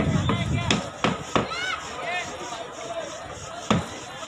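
Sharp knocks at uneven intervals: several in the first second and a half, then a lull, then another near the end. Background voices and a few high chirping calls sound under them.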